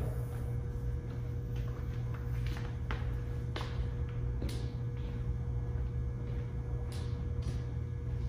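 Footsteps of a runner jogging in running shoes on a concrete shop floor: a series of short, soft taps at irregular spacing, over a steady low hum.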